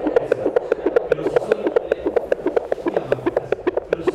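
A fast, even run of short clicks, about seven or eight a second.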